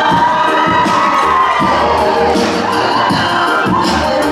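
Crowd of guests cheering and shouting, with drawn-out whoops that glide up and down, over the music playing for a tau'olunga dance.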